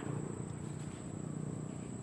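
Faint steady outdoor ambience: a thin, high, unbroken insect drone over a low rumble.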